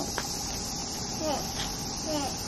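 A chorus of cicadas, a steady high-pitched buzz.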